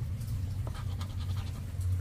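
A coin scraping the latex off a lottery scratch-off ticket in a few short strokes, over a steady low hum.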